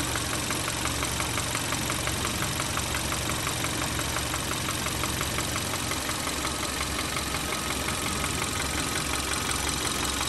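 A 2013 Kia Soul's 1.6-litre GDI four-cylinder engine idling steadily, with a rapid, even clicking from the top end that the owner puts down to the lifters. The oil is dosed with engine flush and automatic transmission fluid to free up oil control rings in an engine that burns oil.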